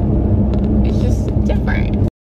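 Road and engine noise inside a car cabin at highway speed: a steady low rumble with a constant droning hum.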